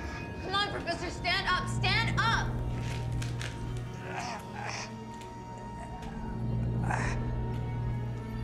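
A man groaning and gasping with effort in short, wordless vocal sounds that rise and fall in pitch, bunched in the first couple of seconds and returning twice later. Under them is a film score with a low steady drone that comes in about two seconds in.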